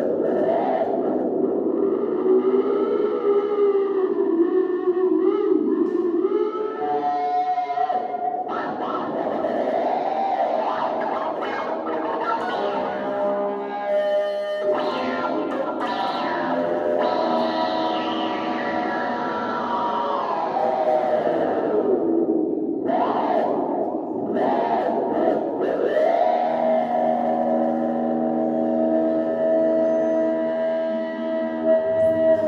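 Free, abstract improvisation on an electric guitar run through effects units and a small amplifier: wavering, sliding pitches with echo and distortion. In the middle the sound glides down at length, and near the end it settles into several held tones layered into a drone.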